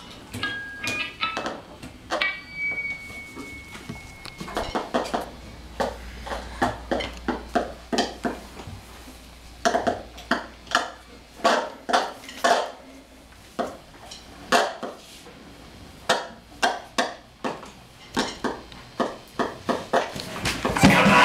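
Sparse free-improvised percussion: short metallic clinks and clattering knocks, with a few ringing pings. About two seconds in, one high tone is held for about two seconds, slowly sinking in pitch.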